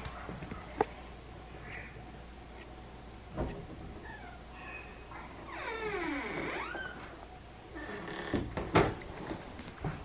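An interior door creaking on its hinges as it is swung open, a squeal that falls and then rises in pitch for about a second and a half midway. Scattered handling clicks and a thump come before it, and a couple of sharp knocks follow near the end.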